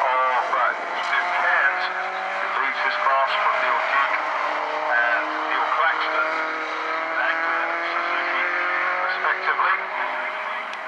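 Racing car engines running past on a circuit, several engine notes sounding together and drifting slowly in pitch as the cars go by.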